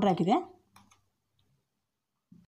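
A woman speaking for the first half second, then a couple of faint clicks from a steel spoon in a mixer-grinder's steel jar of freshly ground spice powder.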